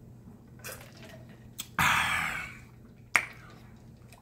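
A person drinking from a large plastic jug: faint swallowing sounds, then about two seconds in a loud breathy exhale of satisfaction after the drink, fading over nearly a second. A single sharp click follows about a second later.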